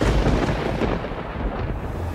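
A thunder-like boom that hits suddenly and rolls on as a low rumble, a dramatic sting sound effect.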